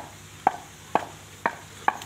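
Wooden pestle pounding spices in a wooden mortar: sharp knocks in a steady rhythm, about two strikes a second.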